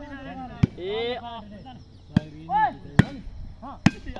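A plastic volleyball struck hard by hand four times during a rally, each hit a sharp smack, the last three under a second apart, with men shouting calls between the hits.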